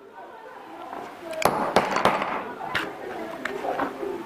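Hammer striking a set of three brogue punches clipped together, driving them through shoe leather: a few sharp metallic taps, three close together near the middle, then two lighter ones.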